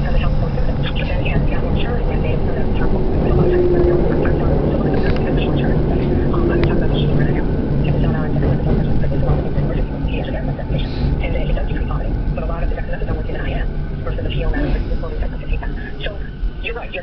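Passenger train running noise heard from inside the carriage: a steady low rumble with a motor hum. The noise eases off in the second half as the train slows into a station.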